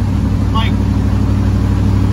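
The twin-turbo destroked 6.0-litre V8 of a 1957 Chevy pickup running steadily while driving, heard inside the cab as a steady low drone.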